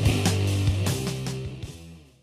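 Hard rock music, guitar and bass chords over drums with cymbal hits, fading out over the second half.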